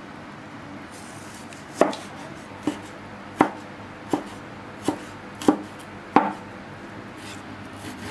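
Cleaver chopping raw meat on a round wooden chopping block: seven sharp knocks, about one every three-quarters of a second, starting a little under two seconds in.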